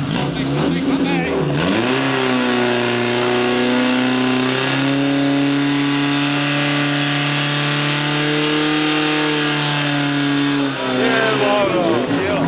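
Portable fire pump engine running at high revs. Its pitch dips briefly and recovers about two seconds in as it takes the load of pumping water through the hose. It then holds a steady pitch and drops off near the end.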